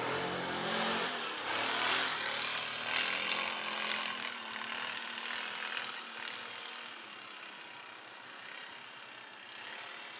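Can-Am Outlander 800 ATV's V-twin engine running as it drives away, fading over the first four seconds or so and leaving a faint steady hiss.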